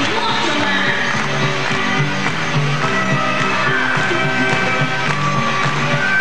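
Live pop band music playing an instrumental passage: a repeating bass line under held melody notes, with no clear lead vocal.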